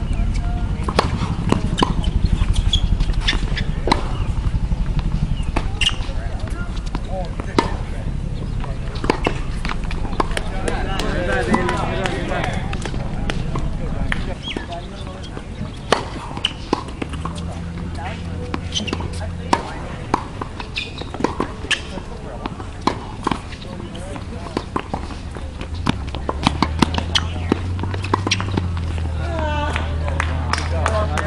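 Tennis balls struck by rackets and bouncing on a hard court during rallies: a string of sharp pops at irregular intervals, over a low rumble, with voices in the background.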